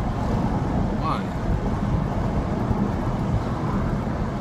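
Steady road and engine noise heard inside a moving car's cabin, with a brief murmur of voice about a second in.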